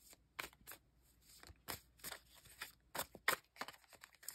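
Tarot cards being shuffled and handled: a faint, irregular run of soft snaps and riffles.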